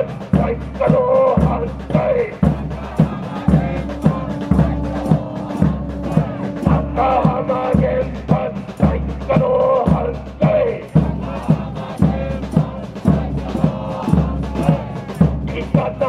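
Rhythmic protest chanting over a loudspeaker, with a large drum beaten steadily about twice a second.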